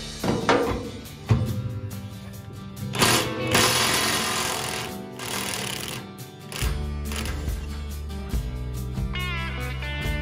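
Cordless impact wrench with a 1-11/16 in impact socket hammering loose a brush hog blade nut, a burst of rapid hammering about two seconds long, a few seconds in. Background music plays throughout.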